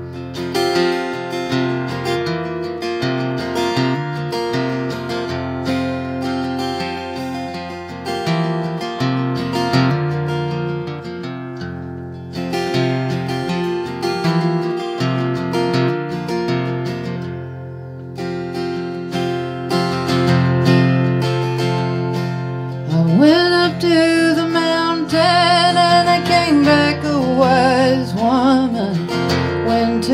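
Solo acoustic guitar playing the introduction to a folk song, joined by a woman singing about three-quarters of the way through.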